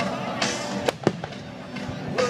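Aerial fireworks shells bursting, two sharp bangs in quick succession about a second in, over music with steady sustained notes.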